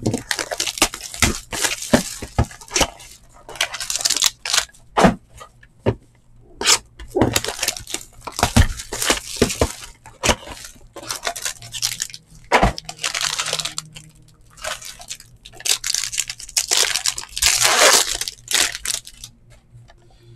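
A sealed cardboard hobby box of trading-card packs being torn open by hand: irregular rustling, crinkling and tearing of the box and its wrapping, with sharp clicks and cracks as the lid and packs are handled.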